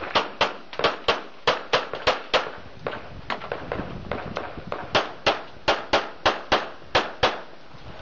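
Handgun shots fired in a rapid string during a timed practical-shooting stage, mostly as double taps about a quarter-second apart. The string pauses into a run of quieter shots about three to four and a half seconds in, then goes on in pairs.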